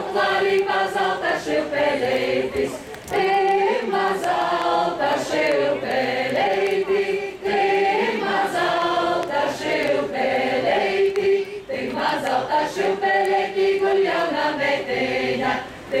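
A folk group singing a Latgalian folk song together in chorus, in phrases broken by short breaths.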